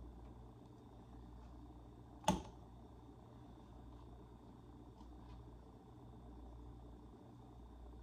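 Low steady hum of a quiet kitchen, with a single sharp click about two seconds in, a metal fork against a foil tray of chicken, and a few faint ticks later as the fork picks at the food.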